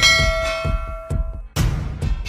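A bell-chime sound effect struck once at the start, its tones ringing and dying away over about a second and a half, the ding of a subscribe-bell animation. Under it runs music with heavy low drum hits.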